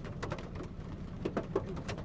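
Low cooing of a pigeon-type bird over irregular sharp drips and ticks of rain and a steady low rumble of wet-road traffic.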